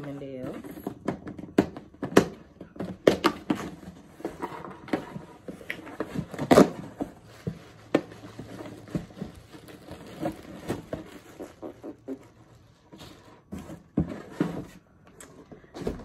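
Cardboard shipping box being opened and its packaging handled: irregular scrapes, rustles and knocks, the loudest about six and a half seconds in.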